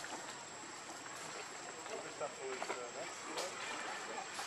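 Faint, distant voices about two to three seconds in, over a steady outdoor hiss with a thin, steady high-pitched tone.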